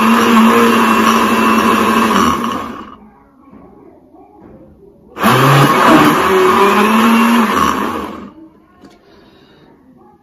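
Electric countertop blender motor running, chopping papaya into a thick juice: it is already running and stops about two and a half seconds in, then is switched on again for about three seconds, its pitch falling as the motor winds down after each burst.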